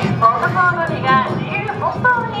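Awa Odori festival sound: a troupe's rhythmic chanted calls over the dance music, with short ticks like wooden geta clacking on the pavement.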